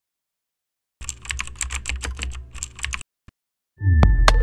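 Computer keyboard typing sound effect: a quick run of key clicks lasting about two seconds over a low steady hum, then a single click. Electronic music comes in just before the end.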